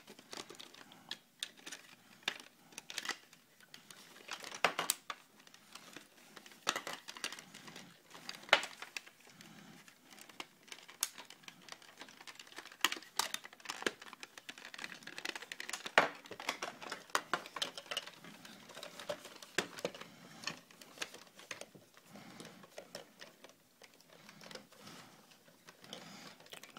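Plastic parts of a large transforming robot-car toy being folded and pushed into place by hand: irregular clicks and snaps, with the softer rub and rustle of handling between them.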